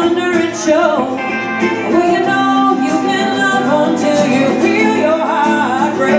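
Live acoustic band playing a song: a woman singing over two guitars.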